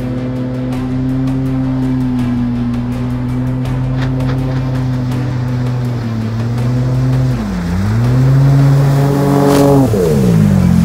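Jet outboard of a 16-foot skiff running at planing speed through shallow river water, a steady engine note that dips briefly about three quarters of the way in. Near the end it grows louder and falls sharply in pitch as the boat passes close by, with a rush of spray.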